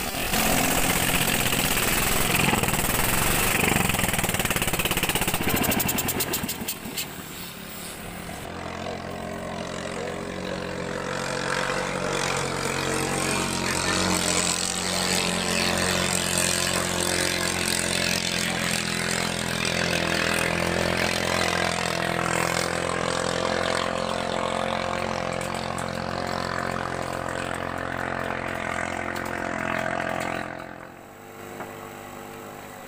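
Katinting longtail racing boat engine running flat out as the boat passes close, its note mixed with the rush of spray, loud for the first six seconds or so. After about eight seconds a steady engine drone at an unchanging pitch carries on from the boat running out on the river.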